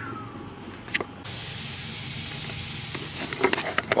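Beaten egg mixture sizzling in a hot nonstick frying pan: a steady hiss that starts abruptly about a second in, just after a single click, with a few small ticks near the end.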